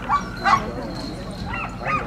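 Alaskan huskies at a sled-dog kennel giving a few short yips and barks, over a steady low hum from the riverboat.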